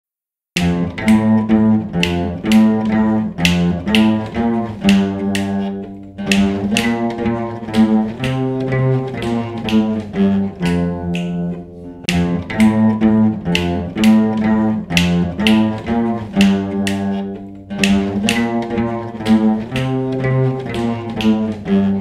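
Ensemble of Saraswati veenas playing a simple beginners' piece in raga Shankarabharanam: plucked melody notes over held low bass notes. The music starts about half a second in and runs in short phrases of about six seconds each.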